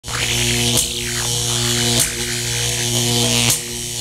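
Electric arcing sound effect: a steady buzzing hum with crackling hiss, broken by three sharp zaps about a second or so apart.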